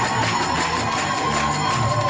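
Kirtan: small hand cymbals struck in a fast, steady rhythm over a held note and a crowd singing and clapping along.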